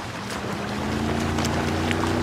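Harbour ambience of wind on the microphone and water, joined about a quarter second in by a steady low drone that swells slightly.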